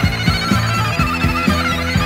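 Instrumental passage of a 1970s rock song: drums keeping a steady beat of about four strikes a second under bass, with a high lead line that wavers and glides.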